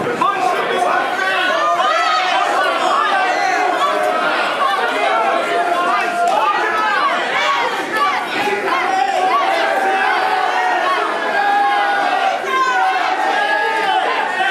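Crowd of wrestling spectators shouting and talking over one another, many overlapping voices with some drawn-out yells.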